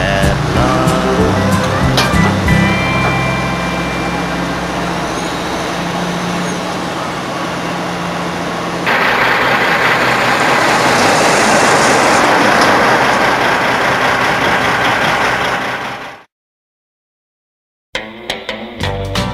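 Closing chords of a country song, then about nine seconds in a semi-trailer truck's engine and tyre noise takes over, loud and steady, as it drives past. It cuts off suddenly near the end.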